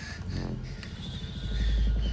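Horror film trailer soundtrack: a deep, low drone that swells louder in the second half, with a thin, steady high tone above it and a line of dialogue spoken softly near the start.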